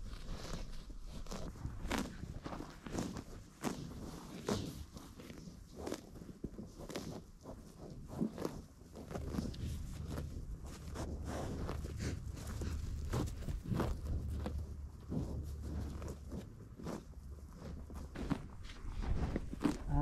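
American bison calves grazing right at the microphone: irregular tearing and crunching of grass being cropped and chewed, with soft hoof steps on the turf.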